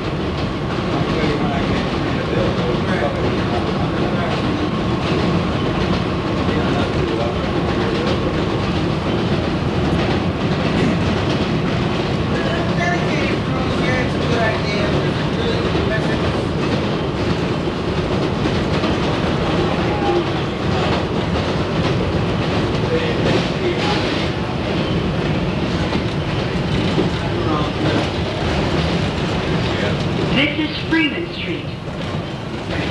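Kawasaki R110A subway train running on elevated track, heard from inside at the front of the car: a steady rumble and clickety-clack of the wheels over the rail joints. A faint steady whine rides on it over roughly the first third.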